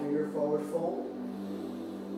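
Ambient background music holding a steady low drone, with a voice heard briefly in the first second.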